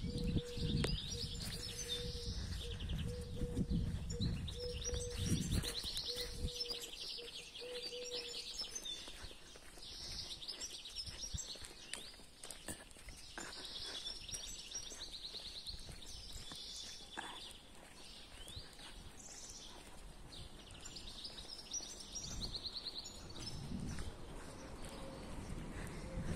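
Small birds chirping in repeated short bursts throughout. Low rumbling on the microphone during the first six seconds and again near the end, and a faint steady hum for the first nine seconds or so.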